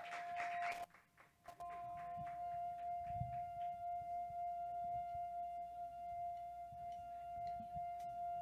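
A single quiet musical note held steady as a drone, with a short break about a second in, at the opening of a rock band's song before the full band comes in.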